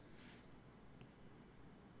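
Near silence, with faint stylus strokes on an iPad screen and a single light tap about halfway through.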